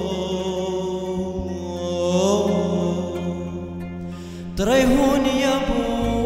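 A male voice sings a Syriac chant (mimro) in a slow, ornamented melodic line over a sustained low drone accompaniment. The line fades a little about four seconds in, then a new, louder phrase begins.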